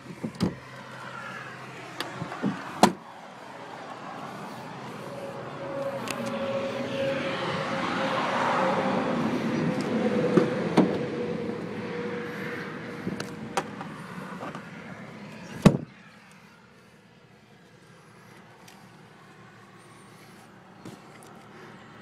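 A vehicle passes by, swelling and fading over about ten seconds with a steady hum in it. Scattered handling knocks come before it, and one sharp knock follows it.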